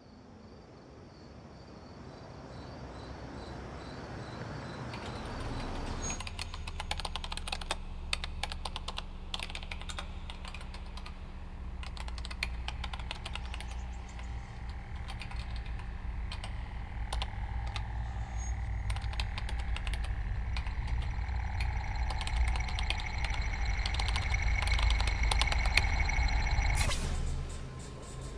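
Computer keyboard keys clicking in quick, uneven runs from about six seconds in, over a low dramatic music drone that swells steadily louder and cuts off suddenly near the end.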